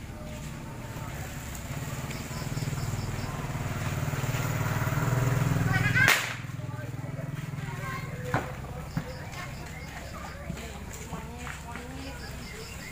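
Firecrackers going off: one loud bang about six seconds in, following a low rumble that builds for several seconds, then two smaller sharp cracks a few seconds later.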